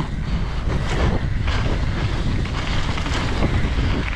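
Steady wind rushing over a helmet-mounted GoPro's microphone while a mountain bike rolls across dirt, with a few faint knocks from the bike around the middle.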